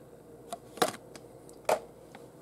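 A few short clicks and taps of a die-cast toy car's plastic blister pack on its cardboard backing card being handled and set down among other carded cars. The two loudest come just under a second apart.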